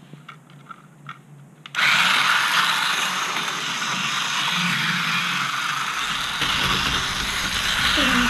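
Battery-powered toy bullet train running on a plastic roller-coaster track: a few faint clicks, then about two seconds in a steady mechanical whirring rattle of motor and wheels starts suddenly and keeps going, with a deeper rumble added from about six seconds in.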